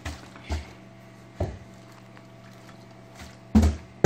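Partly filled plastic water bottle flipped onto carpeted stair treads: a few soft, separate thuds at uneven gaps, the loudest near the end.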